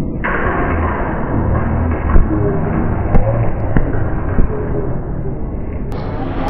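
Football being kicked and striking a wooden goal-shooting wall: four sharp thuds spaced half a second to a second apart, over a steady low rumbling noise.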